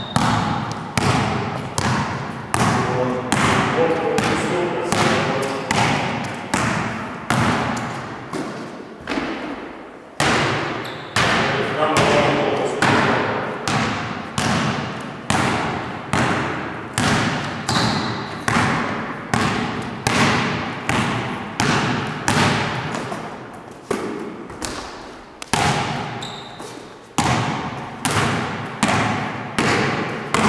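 A basketball being dribbled on a wooden gym floor, about two bounces a second, each bounce ringing on in the hall's echo. The dribbling pauses briefly twice, about nine seconds in and again near the end.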